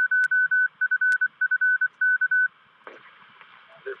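Morse code over a radio receiver: one steady high-pitched beep keyed in dots and dashes, the automatic identifier of a 220 MHz amateur repeater. It stops about two and a half seconds in, and a brief burst of radio hiss follows.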